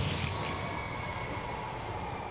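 Hissing tail of a logo-reveal sound effect, fading out steadily, its highest hiss dropping away about a second in.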